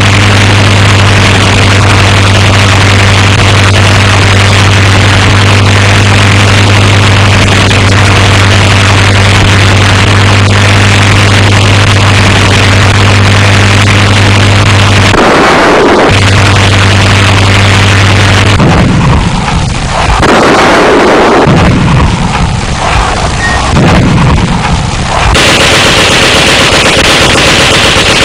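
Propeller aircraft engines drone steadily, with a brief break about 15 seconds in. About 18 seconds in, the drone gives way to several heavy, rumbling booms lasting some seven seconds, the sound of bombs bursting on the ground, before a steady noise returns.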